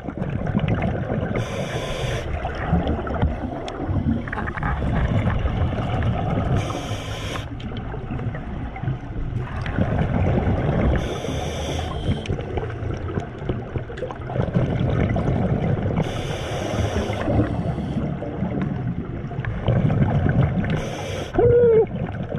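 A diver breathing through a scuba regulator underwater. A short hiss of inhalation comes about every five seconds, and between the hisses runs the rumbling gurgle of exhaled bubbles.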